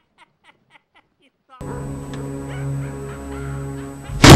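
A rapid snickering laugh in short pulses, about four a second, fades out within the first second. After a short gap, eerie film music with a steady low drone and held tones starts abruptly and runs on.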